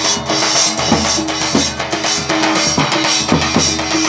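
A large double-headed drum (dhol) beaten in a steady, lively rhythm, with bright metallic clashes of hand cymbals over it.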